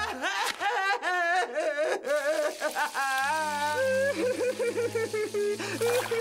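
Cartoon character wailing in a high, wavering, exaggerated cry, turning to lower broken sobbing about three seconds in, over a music score.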